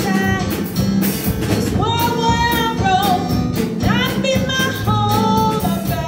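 A woman singing a slow gospel song, holding long notes, with electronic keyboard accompaniment and a steady beat.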